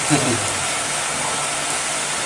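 A steady hiss of background noise under a pause in a man's talk, with the tail of his last word in the first half second.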